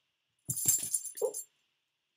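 Small metal tags on a dog's collar jingling for about a second, with a few soft knocks at the start, as the dog moves about.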